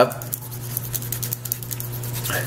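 Light, rapid scratching and ticking as a narrow abrasive strip is rubbed inside a split bolt connector, polishing oxidation off its contact surfaces.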